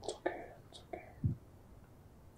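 Soft whispered speech: a few short, hushed words with hissing consonants, mostly in the first second.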